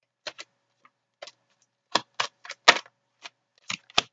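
Tarot cards being handled and a card laid down on the spread: a dozen or so sharp, irregular clicks and flicks of card stock, the loudest a little before three seconds in.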